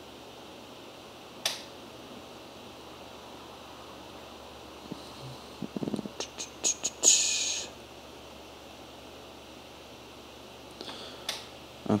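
Quiet room tone with a steady low hum, broken by small clicks from working the computer: one about a second and a half in, a quick run of clicks between five and seven seconds, and a few more near the end. A short breathy hiss comes just after seven seconds.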